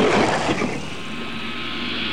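An engine-like rushing sound effect: strongest at the start, easing after about half a second, then holding steady.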